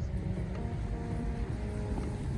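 Steady low rumble of outdoor street noise on a handheld microphone while walking, with a few faint sustained tones over it.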